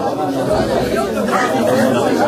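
Indistinct chatter of many people talking at once, overlapping voices with no single speaker standing out.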